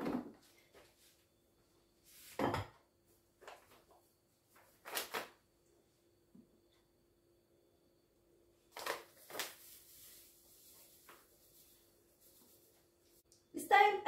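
A few separate knocks and clicks as the Thermomix lid and measuring cup are handled, then a faint rustle as sugar is poured in from a packet; the mixer motor is not running.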